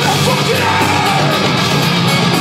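Deathcore band playing live at full volume, with heavy distorted guitars, drums and cymbals, and yelling over the music, recorded from within the crowd.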